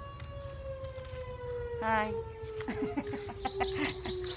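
A distant siren holding one long, steady note that slowly sinks in pitch as it winds down. Near the end, a loud burst of high, quickly bending calls cuts in over it.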